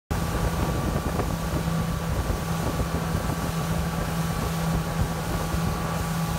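A fishing boat's outboard motor running steadily at speed, a constant hum under the rush of wind and wake water.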